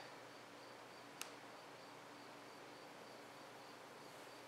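Near silence: faint room tone with a faint, high, evenly pulsing tone and a single small click about a second in.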